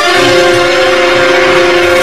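A loud, held musical chord with a bright cymbal-like wash over it: a dramatic sting in the film's soundtrack.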